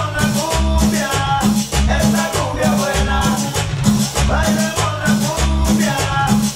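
Cumbia dance music played loud through a sonidero sound system, with a steady bass beat, a repeating melody line and a bright percussion pattern on top.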